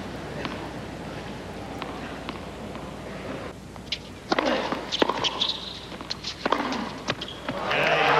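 Tennis crowd noise dies to a hush. From about four seconds in comes a rally of sharp racket-on-ball hits, spaced irregularly. Near the end the crowd breaks into loud cheering and applause.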